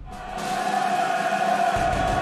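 Dramatic theme music with choir-like voices holding a chord that swells up over the first second, with a deep pulse coming back in near the end.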